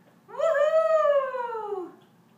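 A small dog howling once: one long call, rising slightly and then falling in pitch over about a second and a half.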